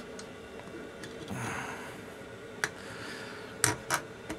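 Kickstarter shaft and return spring being worked into a Simson M500 engine's aluminium crankcase by hand: quiet handling noise with a soft swell about a second and a half in, then three short sharp clicks near the end.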